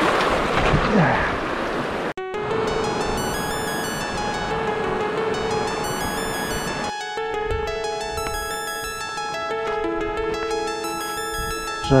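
A rushing mountain stream for about two seconds, cut off suddenly by background music: sustained notes under a quick repeating pattern of high notes.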